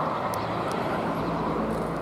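Steady hum of road traffic in the background, with a few faint, short chirps from Eurasian tree sparrows.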